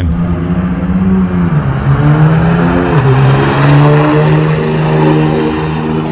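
Turbodiesel pickup's 6.7 L Cummins engine, fitted with an S467.7 Turbonator VGT turbo, pulling hard down a drag strip at full throttle. The pitch climbs and drops back at gear shifts about a second and a half in and again about three seconds in, then holds steady.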